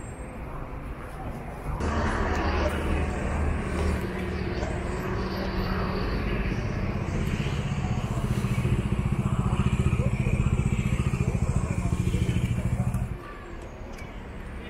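A motor vehicle engine running close by on a city street: a steady low hum with a fast, even pulse over traffic noise. It starts abruptly about two seconds in and cuts off suddenly about a second before the end.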